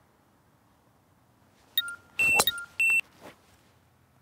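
A driver striking a teed golf ball with one sharp crack, a little over two seconds in. Around it comes a quick run of short, high electronic beeps at two pitches, lasting about a second.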